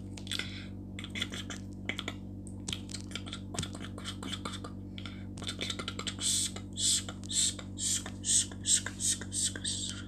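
Fingers tapping on a phone's touchscreen close to its microphone: a run of short clicks that grow louder and scratchier from about halfway through, over a steady low hum.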